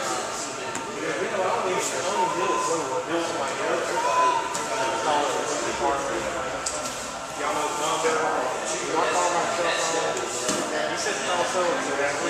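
Indistinct talking: voices in the room that cannot be made out as words.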